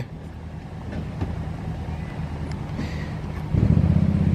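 A vehicle engine idling with a steady low hum, which grows suddenly louder about three and a half seconds in.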